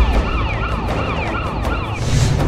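Siren sound effect in a fast, repeating yelp, each cycle sliding down in pitch about three to four times a second, over a low, heavy backing.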